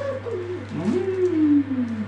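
A person's wordless voice, a coo-like sound that rises briefly and then slides down slowly in one long falling tone.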